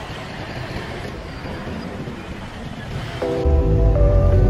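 Steady roadside traffic noise, a rushing hiss from passing cars. About three seconds in, background music with a strong bass line starts suddenly and becomes the loudest sound.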